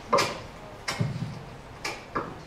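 Three short knocks about a second apart, handling noise from a handheld microphone bumped as it is carried through the audience.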